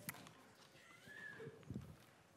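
Quiet lecture-hall room tone with a few scattered small clicks and knocks from the audience, one just after the start and a cluster near the end.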